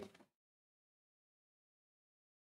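Near silence: a word trails off in the first moment, then nothing at all is heard.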